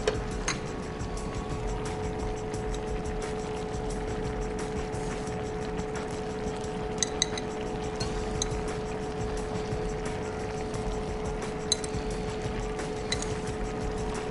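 A few light clinks of a metal spoon against the tagine dish and bowl as olives are spooned into the simmering stew, over a steady low hum.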